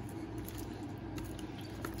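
Faint rustling and squishing of lettuce and chopped vegetables being tossed with plastic salad tongs in a plastic bowl, with a few soft clicks, over a steady low hum.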